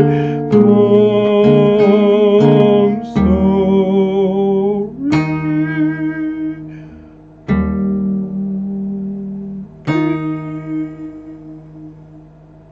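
Acoustic guitar played slowly with a wordless sung line: for the first few seconds a wavering voice rides over held guitar notes. Then three chords are struck about two and a half seconds apart, each left to ring out and fade.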